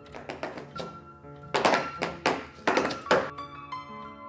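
A run of sharp thunks and taps from black leather dance shoes stamping and stepping, over music of held tones. The loudest stamps come in a cluster from about a second and a half in to just past three seconds.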